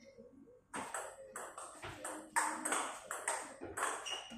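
Table tennis rally: the plastic ball clicking in quick succession off the bats and the table, a few hits a second. It starts about a second in.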